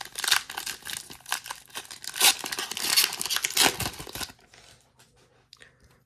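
A Pokémon booster pack's foil wrapper being torn open and crinkled by hand: a dense crackling rustle that dies away about four seconds in, leaving only faint handling.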